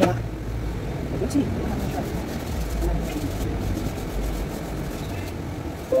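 A steady low rumble that swells and fades a little, with faint voices in the background.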